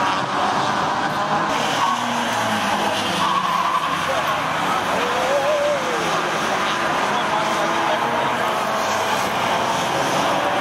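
Classic Alfa Romeo racing coupés with twin-cam four-cylinder engines running hard at racing speed. A tyre squeal rises and falls about four to six seconds in as a car corners.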